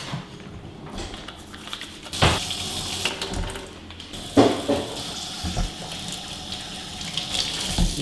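Kitchen faucet running into a sink as hands are washed under it, the water noise getting louder about two seconds in. Two sharp knocks, about two seconds apart, sound over it.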